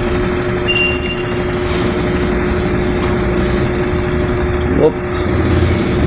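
A steady rumble of room noise with a constant low hum fills the hall. A couple of faint sharp clicks from a table tennis ball come in the first two seconds.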